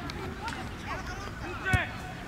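Shouted voices calling across an outdoor football pitch, with a single thud of a football being kicked near the end.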